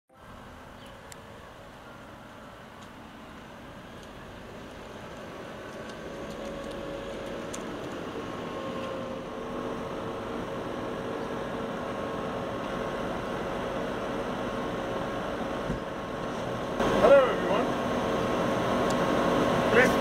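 A steady hum that fades in over the first several seconds, with a brief voice about three seconds before the end.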